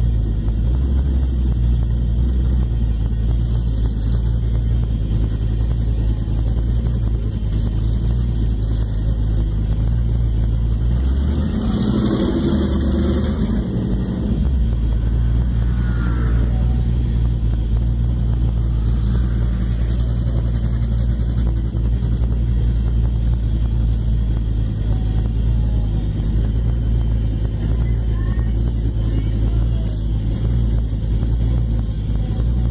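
LS1 5.7-litre V8 of a 1998 Pontiac Trans Am heard from inside the cabin, running at low speed with a steady deep rumble. About twelve seconds in, the engine note briefly rises and changes for a couple of seconds, then settles back.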